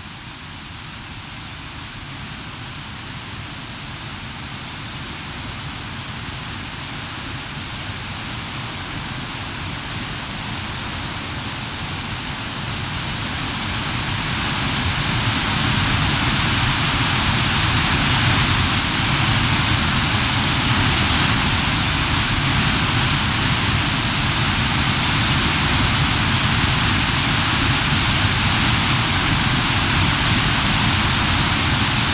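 Whitewater rapids rushing and splashing close around a river boat, a steady roar of water that grows louder over the first half and then holds steady.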